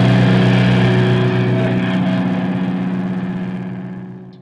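Final distorted electric-guitar chord of a live heavy rock song ringing out, held steady and fading away towards the end.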